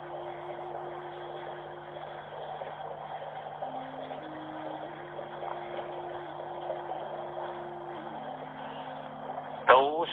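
Soft background music: a slow line of held notes, stepping to a new pitch about every second or so, over a steady low drone, with a faint even hiss beneath.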